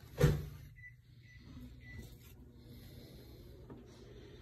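A single sharp knock from the wooden A-frame guitar stand being handled, about a quarter second in, then low room noise with faint handling sounds.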